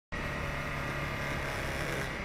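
Motorcycle engine running steadily while riding, mixed with even wind and road noise on the onboard camera's microphone.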